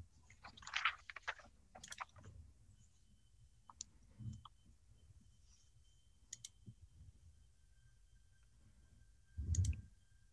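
Faint, scattered clicks and small handling noises picked up by an open call microphone, with a short, dull low bump near the end that is the loudest sound.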